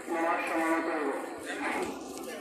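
A long, drawn-out voice held on a nearly steady pitch, with a brief rise and fall in pitch about one and a half seconds in.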